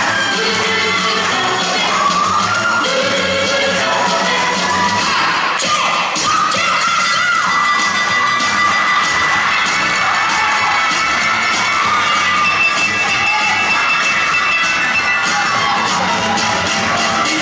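Fast dance music for an acrobatic rock'n'roll routine, with a crowd cheering and shouting over it; a few shouted whoops rise out of the cheering about five to seven seconds in.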